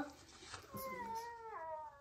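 A faint, long, drawn-out meow-like call that starts under a second in and steps down in pitch about halfway through.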